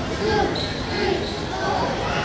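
Indistinct voices of children and adults echoing in a gymnasium, with a basketball bouncing on the hardwood floor.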